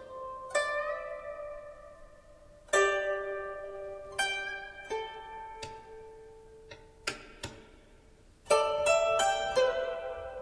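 Performance music on a Chinese plucked zither: sparse single notes that ring out and fade, some bent slightly upward in pitch, with a quick run of several notes near the end.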